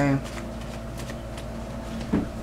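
Tarot cards being shuffled and handled: a series of soft, irregular card flicks and rustles.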